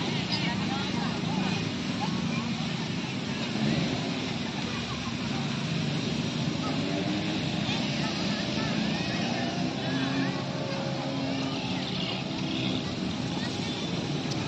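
Busy outdoor park ambience: a steady mix of distant voices and chatter, children among them, over continuous road traffic.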